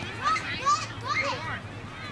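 High-pitched children's voices shouting and calling out over one another, with one loud shout under a second in.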